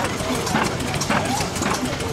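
Burrell steam traction engine running a belt-driven rock crusher, with a steady, even beat about four times a second.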